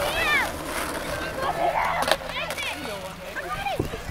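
Skateboard rolling on concrete, with a sharp clack about two seconds in, as a trick is attempted and not landed. Distant voices call out in high rising-and-falling shouts, three times.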